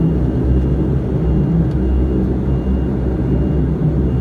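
Cabin noise of a Bombardier Q400 turboprop on the ground, most likely taxiing: a steady low drone from its Pratt & Whitney PW150A engines and propellers, with a faint thin high tone above it.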